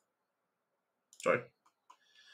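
Two faint, short computer mouse clicks near the end, following a single spoken word.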